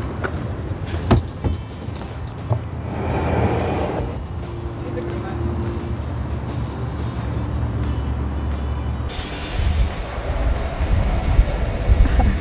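Van engine rumbling steadily while a wooden dog kennel is loaded into the back. A sharp knock comes about a second in, with a smaller one and a scraping noise over the next few seconds.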